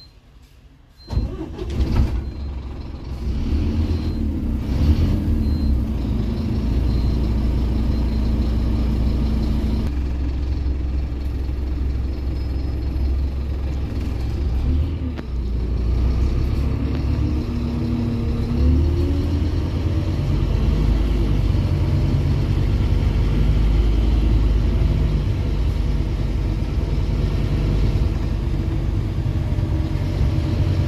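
Scania OmniCity bus engine starting about a second in, then running and pulling away, heard from inside the saloon as a steady low rumble with the pitch rising and falling through the gears.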